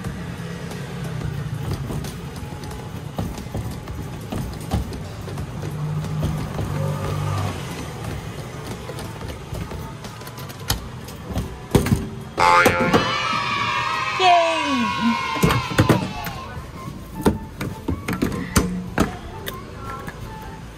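Arcade claw machine playing its electronic music and sound effects over arcade background noise, with a louder jingle of gliding tones about two thirds of the way through. Several sharp knocks come through the second half as the claw works and the prize drops.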